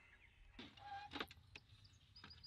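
Faint light knocks of a plywood flap on a piano hinge being swung up and shut over a stove compartment, with a few soft wooden taps.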